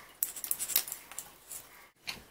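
Christmas tree branches and a hanging ornament rustling and clicking as a baby's hand pulls at them: a quick run of sharp clicks lasting about a second, fading, then cutting off suddenly.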